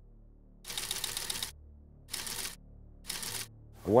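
Typewriter keys clacking in three short bursts of rapid strokes, separated by pauses of about half a second.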